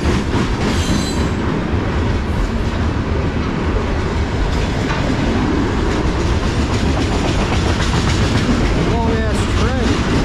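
Freight cars of a long manifest train rolling steadily past, their wheels clicking over the rail joints with a continuous rumble. A brief high wheel squeal comes about a second in.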